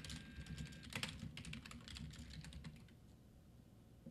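Faint computer-keyboard typing: a quick run of keystroke clicks with one louder knock about a second in, thinning out near the end.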